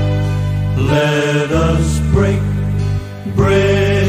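Recorded male gospel trio: voices holding notes in harmony over sustained low accompaniment, with a brief drop in level about three seconds in.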